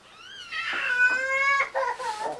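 A high-pitched, drawn-out wailing cry: a short squeal that rises and falls, then a longer, louder cry whose pitch rises slowly for about a second before it breaks off.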